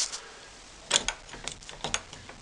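An old Victorian box rim latch on a wooden door, dated to about 1885, clicking as it is worked by hand: a sharp click about a second in, then a few lighter clicks near the end.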